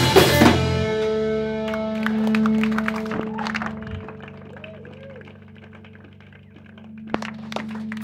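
A live band's last hits on the drum kit with the guitars, stopping about a second in; guitar notes and a steady low amplifier tone then ring on and slowly fade, with a few small clicks and a knock near the end.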